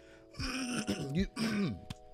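A man clearing his throat: a raspy hack followed by a few short voiced grunts, lasting about a second and a half.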